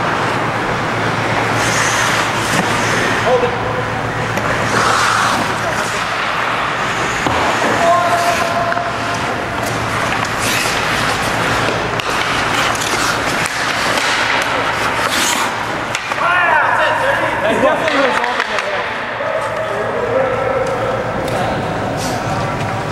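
Ice hockey play: skate blades scraping across the ice and several sharp clacks of sticks and puck, with players' indistinct voices.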